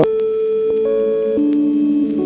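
Soft ambient background music: sustained, bell-like tones shifting from note to note every half second or so.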